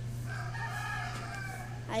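A rooster crowing faintly in the background, one long call of about a second and a half, over a steady low hum.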